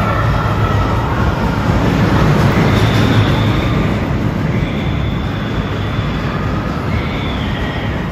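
Roller coaster train running along its steel track: a loud, steady rumble, with faint high squeals that come and go.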